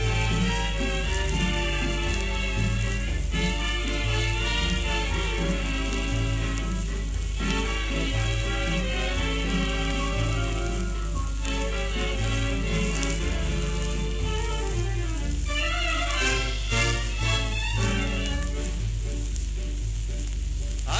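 Instrumental interlude of a song played from a shellac 78 rpm record, with no singing. A steady crackle and hiss of record surface noise runs under the music.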